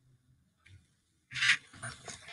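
A short, loud breath out, like a sigh, about a second and a half in, followed by fainter breathy noises.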